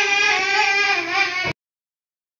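A young child crying, one long steady wail that cuts off suddenly about one and a half seconds in.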